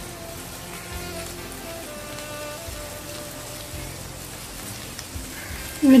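Clams cooking in masala in a frying pan, giving a steady, even sizzle, with faint music underneath.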